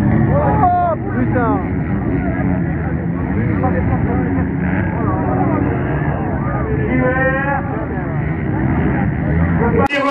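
Dirt bike engines running with a steady drone and shifting pitch, heard in a thin, phone-quality recording with voices over it.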